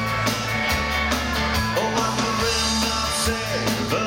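Dansband playing live: drum kit, electric guitars and keyboard, with a steady beat.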